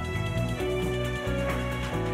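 Instrumental theme music of a TV series' opening titles: sustained synthesized tones over deep bass notes.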